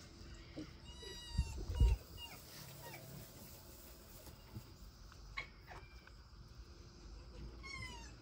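Red foxes making short high-pitched calls while playing, one about a second in and another near the end, with two low thumps just after the first call.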